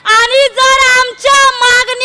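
A young woman's loud, high-pitched voice declaiming an impassioned speech into a microphone, in long drawn-out syllables with short breaks.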